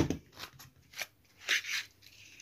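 A few short clicks and paper rustles from a handheld stapler and paper pattern pieces being handled and set down on a wooden tabletop, the last and loudest about one and a half seconds in.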